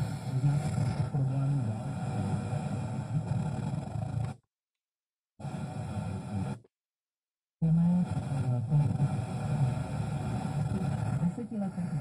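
FM radio talk broadcast playing through a mini hi-fi system's tuner, a voice over a background of reception noise. The sound cuts out completely twice, for about a second each time, around the middle, as the tuner mutes while it is stepped to a new frequency.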